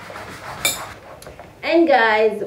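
One short, ringing clink of a metal utensil against a dish about two-thirds of a second in, amid soft kitchen handling noise; a woman starts speaking near the end.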